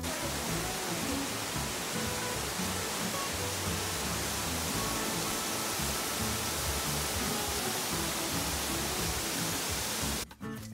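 Steady, loud rush of a waterfall, with background music faint beneath it.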